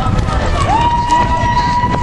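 A person's voice holding one long, high, level shout, starting about a third of the way in, over steady low rumbling noise.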